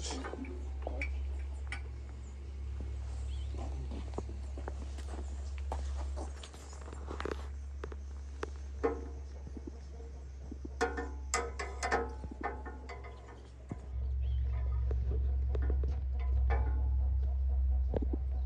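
Scattered light clicks and knocks of a plastic crate of pork and a mechanical platform scale being handled during weighing, several in quick succession near the middle, over a steady low rumble that grows louder near the end.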